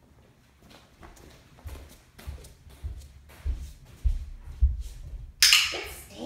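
Footsteps of a person walking at a steady pace across the floor, about six heavy steps a little over half a second apart. Near the end comes a short, loud rustling burst.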